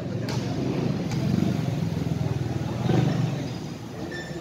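Low rumble of a motor vehicle's engine, swelling about a second and a half in and again about three seconds in.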